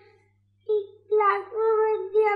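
A young child's high-pitched voice talking in drawn-out, sing-song phrases, starting after a brief silence about two thirds of a second in.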